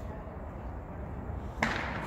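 Outdoor urban background with a steady low rumble, and a short hissing burst near the end.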